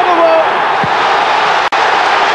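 Football stadium crowd cheering a goal: a loud, steady wash of noise with a split-second dropout near the end.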